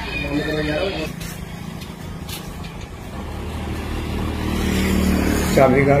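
A motor vehicle going by on the road, its engine rumble growing steadily louder over a few seconds before fading under speech.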